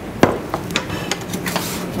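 Metal baking tray knocking sharply once about a quarter-second in, followed by a few lighter clicks and scrapes as it is handled.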